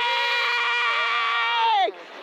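A man's long, sustained yell of celebration, held on one steady pitch and then falling away just before the end.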